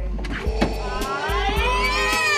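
A woman's high-pitched excited squeal of greeting, rising in pitch, beginning about halfway through, over background music with a steady bass.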